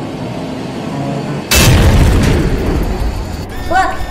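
A sudden loud explosion sound effect about a second and a half in, dying away over the next second or so: the spaceship crashing.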